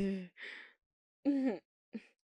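A woman's short wordless vocal sounds: a brief murmur, a breathy sigh-like exhale, and after a short pause another brief murmur falling in pitch.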